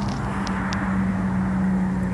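A steady low hum over an even wash of outdoor noise, with two faint ticks about half a second in.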